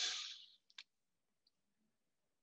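A lecturer's short breath, heard as a soft hiss that fades over about half a second, then two faint clicks. After that there is near silence.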